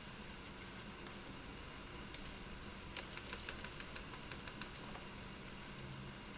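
Laptop keyboard typing: a few single key clicks, then a quick run of keystrokes about three seconds in that lasts about two seconds.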